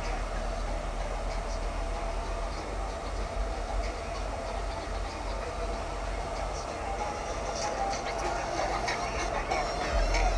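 Car audio subwoofers (Fi Audio Delta 15s on Crescendo BC8000 amplifiers) playing a steady deep bass note, heard at moderate level, with voices faint underneath.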